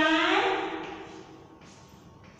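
A woman's voice trailing off on a long, drawn-out vowel that falls in pitch and fades within the first second. A faint scratch of chalk on a blackboard follows near the end.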